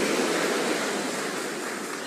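A congregation applauding, a steady wash of clapping that slowly fades.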